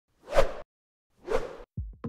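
Two whoosh sound effects about a second apart, followed near the end by a couple of deep, falling thumps.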